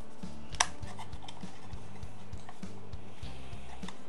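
A sharp plastic click about half a second in, with a few fainter clicks, as the Comica CVM-WM100 Plus receiver's battery cover is pushed down and swung open, over background music.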